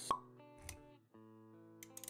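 Intro-animation sound effects over background music of held notes: a sharp pop just after the start, the loudest sound, and a second, softer hit about half a second later.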